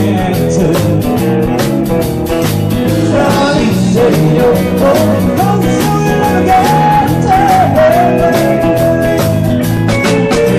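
A live band playing an upbeat song, with drums keeping a steady beat under bass guitar, electric guitar and singing. A long held melody note runs through the second half.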